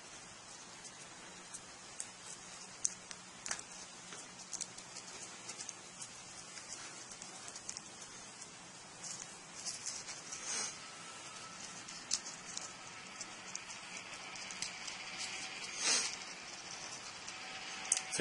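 Cardstock paper being folded and pressed by hand: faint scattered crinkles and small ticks, with a couple of slightly louder rustles around ten seconds in and near the end.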